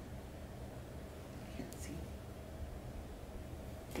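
A quiet room with a steady low hum, and a faint whispered word about one and a half seconds in.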